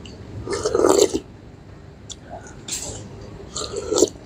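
A man slurping broth off a spoon: a loud slurp about half a second in, then shorter slurps near three seconds and near the end.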